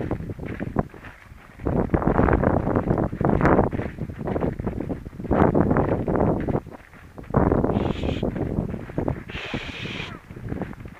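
Gusty wind buffeting the microphone, mixed with leafy crop rustling as someone walks through it, coming in irregular surges about a second long with short lulls between.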